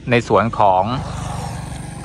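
A small engine running with a fast, even pulse, which sets in about a second in and fades slowly toward the end.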